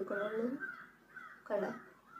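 A crow cawing: one call at the start and a shorter, falling call about a second and a half in.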